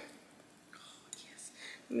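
A soft, faint whisper from a woman, starting a little under a second in, with a light click just after; otherwise near-quiet room tone until normal speech resumes at the very end.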